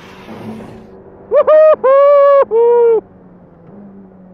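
Ferrari Challenge Evo race car's V8 engine running at high revs, heard from inside the car. It comes in four short, steady bursts broken by brief cuts, each a little lower in pitch than the one before.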